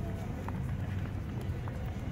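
Outdoor ambience: a steady low rumble with faint voices of passers-by and a few soft taps, like footsteps on cobblestones.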